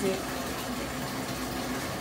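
Water running steadily from a tap, filling a bathtub.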